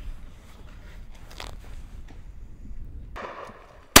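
Faint rustling and handling noises over a low rumble, then one loud, sharp shotgun shot from an over-and-under fired at a driven pheasant, right at the end.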